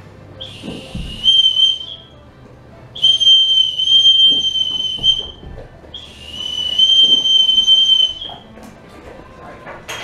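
Dog training whistle blown in three long, steady, high-pitched blasts: the recall signal calling the dogs to come.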